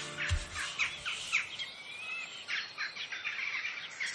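Songbirds chirping: scattered short chirps, with one longer whistled note gliding about halfway through.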